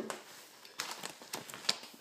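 A short knock at the start, then a foil Mylar bag filled with rolled oats crinkling and crackling in irregular bursts as it is handled.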